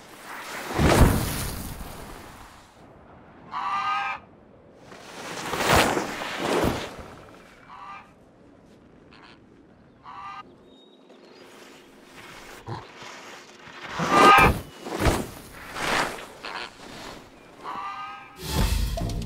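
Skis swishing over snow in several long sweeps, with short honking calls from cartoon flamingos in between.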